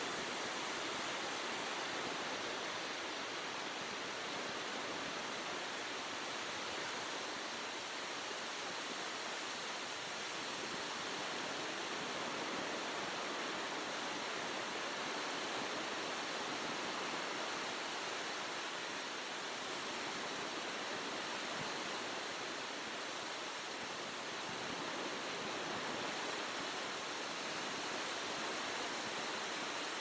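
Ocean surf washing onto a sandy beach: a steady rush of noise that rises and falls gently with the waves.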